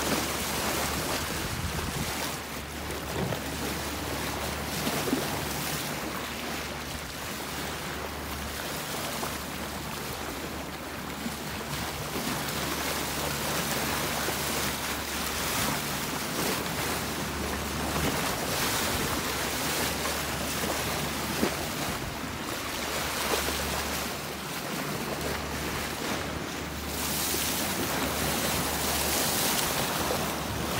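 Sea water rushing and splashing along a moving boat's hull, with wind buffeting the microphone and a steady low hum from the boat's engine underneath.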